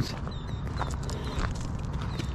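Footsteps on loose gravel and track ballast at a walking pace, a run of short gritty crunches.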